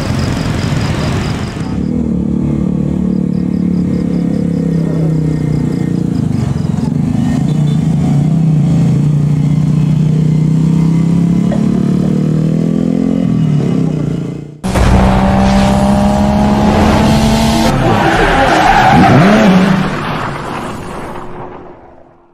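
Road traffic on a steep uphill road: motorcycle and car engines running as they pass, a steady engine drone throughout. The sound breaks off abruptly about two-thirds through, resumes, and fades out near the end.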